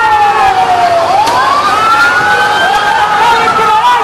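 Police vehicle siren wailing in a slow cycle: its pitch falls to a low point about a second in, climbs again, and starts falling once more near the end.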